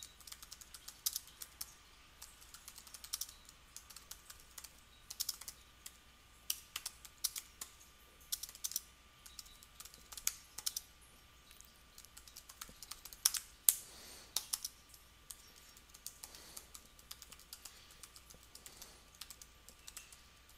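Typing on a computer keyboard: irregular runs of keystroke clicks with short pauses between words.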